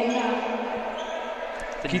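Floorball game sound in a large sports hall: a steady background of voices and shouts, with a couple of sharp clicks of sticks and the plastic ball.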